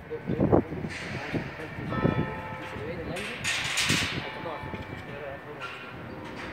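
Indistinct voices of people talking in the background, with a brief burst of hiss about three and a half seconds in.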